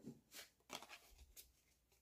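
Faint rustles and soft taps of Pokémon trading cards being handled and laid down on a playmat: a handful of short strokes in the first second and a half, then quieter.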